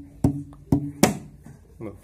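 Hand strikes on an empty plastic water bottle used as a makeshift hadroh frame drum: three quick hits in the first second, each with a short low ring. It is struck on its wider section rather than on the moulded ribs, which give a cracked sound.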